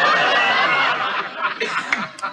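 Sitcom studio audience laughing loudly, the laughter thinning out near the end.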